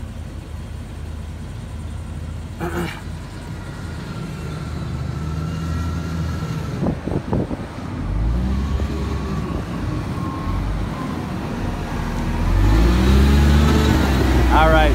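Diesel engine of a large front-end wheel loader running, revving up twice with a rising pitch and getting louder toward the end as the machine comes close.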